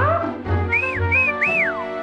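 Cartoon music with a pulsing bass line, opening with a quick rising swoop. Over it, three whistled notes: two short rise-and-fall notes, then a longer one that slides well down at the end.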